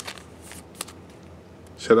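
Pokémon trading cards being handled: a few light clicks and slides of cardstock as a card is shifted between the fingers.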